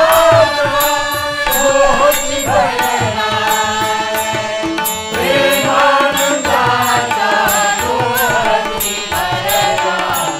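Marathi devotional bhajan ensemble playing: harmonium and tabla with a small hand drum keeping a steady beat, under a melody line that glides in pitch.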